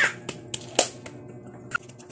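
Five sharp, unevenly spaced hand claps and snaps, the loudest a little under a second in.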